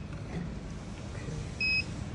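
A single short, high electronic beep from the touchscreen control panel of a YG(B)461G fabric air permeability tester, acknowledging a key press, near the end.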